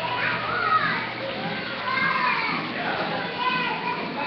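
Children's high voices shouting and chattering over one another, a busy play-area babble.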